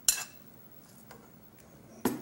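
A metal spoon clinks sharply once against a stainless steel pot, with a short ring after it, followed by a few faint light clicks as the stirring goes on.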